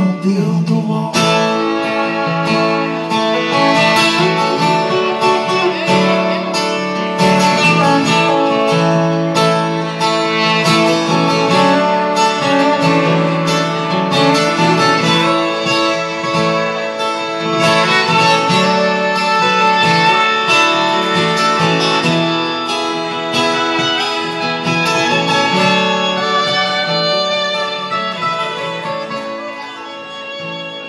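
Two acoustic guitars playing an instrumental passage of a slow live song, with no singing, easing off slightly near the end.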